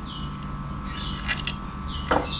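Light clicks and scrapes of a motorcycle's metal steering parts being handled as the lower triple clamp is fitted onto the steering stem, a few short ones near the start and about a second in, over a low steady hum.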